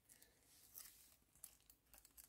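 Near silence, with a few faint, brief rustles of an organza gift bag and its packaging being handled.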